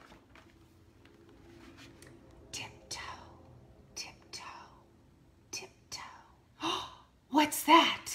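A woman whispering "tiptoe" three times, then saying "what's that?" aloud.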